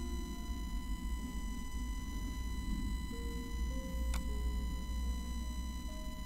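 Steady low electrical hum with background hiss and a faint high, even whine, with a few faint soft notes drifting through. A single soft click about four seconds in.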